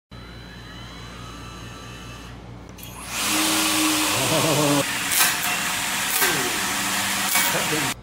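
Electric trimmer heads of a robotic trimmer arm, driven by a 48-volt brushless DC motor, with a faint whine rising at the start. About three seconds in it gives way to a loud, steady rushing noise, with a man's voice and a few sharp clicks over it.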